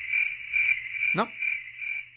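Chirping night-chorus sound effect: a high trill pulsing about four to five times a second, used as the 'crickets' gag for a question met with silence.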